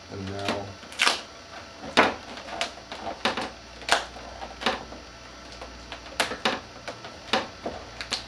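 Sharp, irregular clicks and snaps, about one or two a second, from vinyl wrap film being pulled and pressed down by hand on a fiberglass snowmobile hood.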